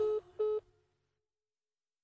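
Telephone-style call-ended beeps closing the song: two short identical tones about 0.4 s apart over the last faint tail of the music, after which the track ends.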